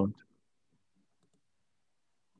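The end of a spoken word in the first moment, then near silence: room tone over a headset microphone.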